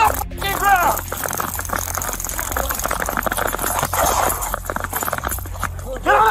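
Running footsteps and the thumping jostle of a body-worn camera during a police foot chase, with an officer shouting once just after the start.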